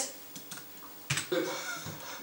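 A few soft computer keyboard clicks, then a sharper click about a second in, followed by a short murmured "uh".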